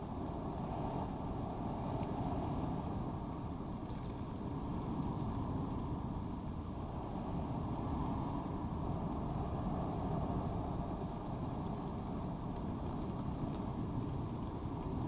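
Steady low rumble of outdoor background noise, gently swelling and easing, with no distinct events in it.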